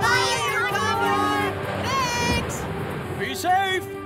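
Animated characters' voices exclaiming and calling out without clear words, over steady background music.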